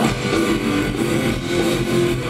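Amplified electric guitar and bass guitar of a live punk band playing, loud, with held notes over a heavy low end.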